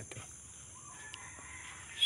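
A rooster crowing faintly: one drawn-out call that rises and then holds, in the second half.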